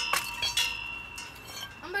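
A hard clinking strike whose ringing dies away over about a second and a half, with a couple of lighter clicks in it.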